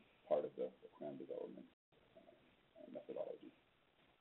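A man's voice speaking in two short phrases with a pause between them.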